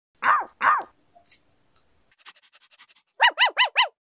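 Puppy yelps: two high arched yelps at the start, then four quick high yips in a row near the end, with a few faint light ticks in between.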